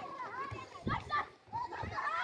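Many children's voices shouting and calling over one another during a football game.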